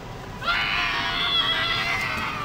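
A person's high-pitched, drawn-out scream, starting about half a second in and held for about a second and a half.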